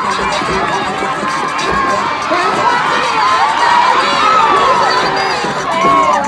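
A crowd shouting and cheering, many voices overlapping, with a loud shout near the end.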